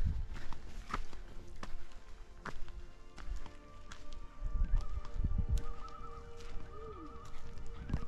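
Common loons calling with their fast warbling tremolo, in short bouts from about five seconds in and again near the end, with scattered clicks and taps.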